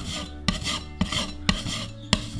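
Steel putty knife scraping quick-dry wall filler across a plaster wall, spreading and smoothing it flat. A rasping scrape with a sharp tick about twice a second as each stroke starts.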